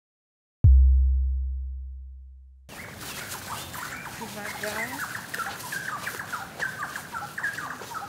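A single deep, low boom hits under a half-second in and fades away over about two seconds. After a cut it gives way to open-air ambience with birds chirping and faint voices.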